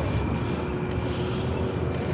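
Steady low rumble of an approaching light rail train and street traffic, with a faint steady hum.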